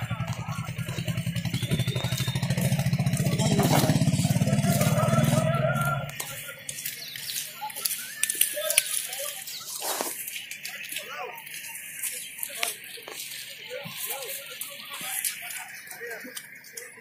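A motor vehicle's engine running close by, growing louder over the first few seconds and cutting off abruptly about six seconds in. After that, scattered voices of passers-by over faint street noise.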